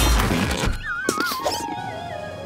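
Cartoon sound effects over background music: a whooshing magic-transformation burst with a deep low rumble at the start, then a wobbly, falling squeal from a small cartoon creature about a second in.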